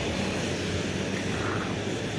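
Steady outdoor street noise: a low hum of passing traffic under a constant hiss.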